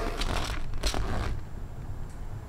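Paper leaflet rustling and crinkling as it is unfolded and handled, with a few faint crackles.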